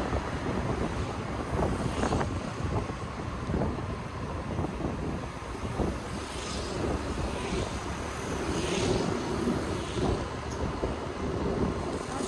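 Wind buffeting the microphone of a moving motor scooter, over steady engine and road noise. Other traffic swells past a few times in the middle.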